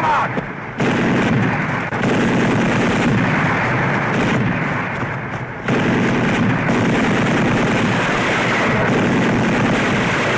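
Sustained gunfire and artillery fire in a dense, continuous din that eases briefly twice, about half a second in and again around five seconds in.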